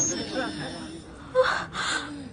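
A person gasping: two short, breathy gasps a little past the middle, after a faint snatch of voice.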